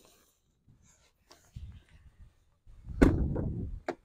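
Low handling rustle, then a sudden loud thump about three seconds in with a short rumble after it, and a sharp click near the end: a pickup truck's door being handled.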